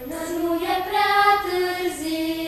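Children singing a hymn together: a slow melody in long held notes.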